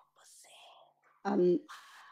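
Only speech: a woman speaking Telugu slowly into a microphone, with a faint breath and then a single short word about a second and a half in, and pauses around them.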